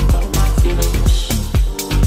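House-style electronic dance music from a DJ mix: a steady four-on-the-floor kick drum about two beats a second over a deep sustained bassline and synth chords.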